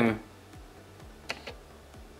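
A spoken word trails off at the start, then a low steady background with two short, faint clicks a little over a second in.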